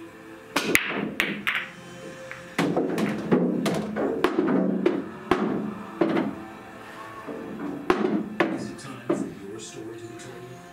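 A pool break: the cue ball strikes a racked set of fifteen billiard balls with a sharp crack about half a second in, followed by balls clacking against each other and the cushions for several seconds. A few more knocks come near the end, over background music.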